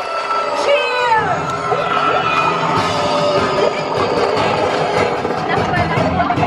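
Ride noise from inside a moving roller coaster car: a low rumble with riders' falling whoops about a second in. Music plays over it.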